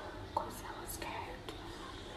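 A woman's soft whispering or breathy half-spoken words between sentences, with a short click, a lip or mouth noise, about a third of a second in.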